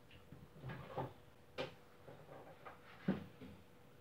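Refrigerator door opened and things handled inside: a few faint knocks and clicks, the sharpest about one and a half seconds in and again about three seconds in.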